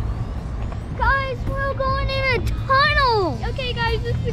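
Steady low rumble of a slow-moving car heard from inside the cabin, with a high-pitched voice making drawn-out wordless sounds from about a second in, one of them gliding down in pitch.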